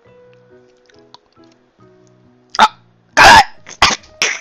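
A man coughs and sputters sharply three times, starting about two and a half seconds in, the loudest in the middle, reacting to a mouthful of overly spicy tteokbokki. Faint background music plays underneath.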